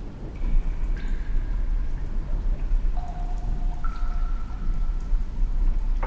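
Film sound-design ambience: a steady rain-like patter over a deep low rumble, with a few soft held music notes coming in one after another.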